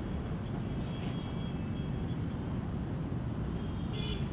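Steady low outdoor rumble, with a faint thin high tone about one to two seconds in.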